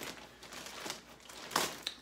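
Plastic poly mailer bag crinkling and rustling as it is torn open, in a few short bursts with the loudest a little past the middle.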